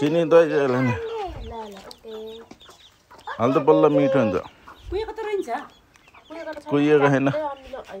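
Domestic chickens clucking, with three loud, drawn-out calls: one at the start, one about three and a half seconds in and one near the end.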